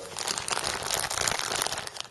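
Plastic packaging crinkling and rustling in an irregular, crackly way as it is handled.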